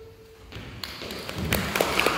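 Audience applause beginning about half a second in and building, with individual claps growing denser near the end.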